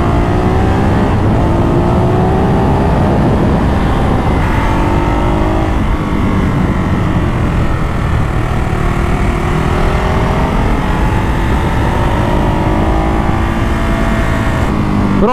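Ducati Hypermotard 939's 937 cc L-twin engine on its stock exhaust, accelerating on the road. Its pitch climbs, drops and climbs again about four times as it pulls through the gears.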